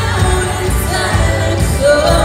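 Live worship music: a lead singer over an amplified band with strong bass, singing a sustained melody line.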